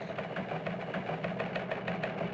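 A steady mechanical hum with rapid, even ticking, about ten ticks a second.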